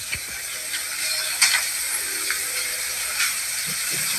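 Steady hiss of a meeting-room recording with a few scattered clicks and knocks, the handling and movement sounds heard over an open microphone.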